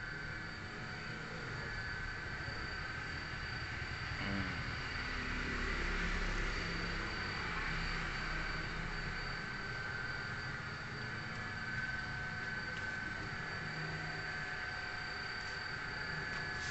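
Large-format inkjet printer running: a steady hum with several thin, high whining tones.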